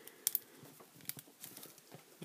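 A few faint, sharp clicks of small toy-figure parts being handled as a tail piece is tried on an action figure.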